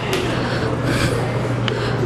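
Outdoor street background noise with a steady low hum under it and a few soft knocks about a second apart.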